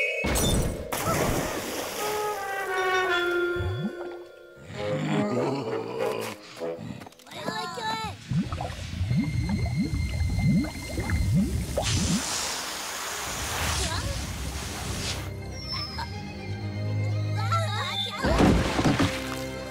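Cartoon soundtrack: music mixed with sound effects. A sharp impact comes just after the start, falling tones follow over the next few seconds, and wet squelching and gurgling run through the middle, with squeaky cartoon voices.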